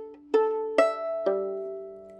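Violin strings plucked pizzicato with a finger: four separate plucked notes, each starting sharply and ringing down, the last one left to ring and fade.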